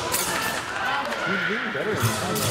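Voices calling out, rising and falling, with a single thud near the start.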